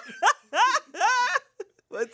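Hard laughter in two high-pitched bursts, dying away about a second and a half in.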